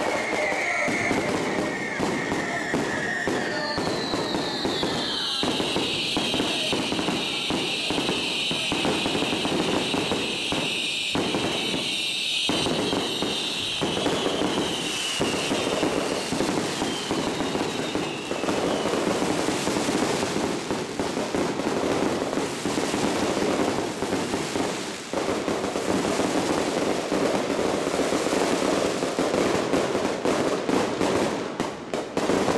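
Aerial fireworks and firecrackers going off in a continuous barrage of crackles and bangs. A high hiss slowly falls in pitch from about four seconds in to about eighteen.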